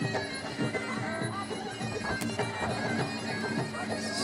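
Traditional Muay Thai fight music (sarama): a reedy pi oboe plays a continuous wailing melody over drums and small cymbals.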